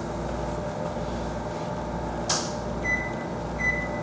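Steady low background hum, with one sharp click a little past halfway and two short, faint high beeps near the end.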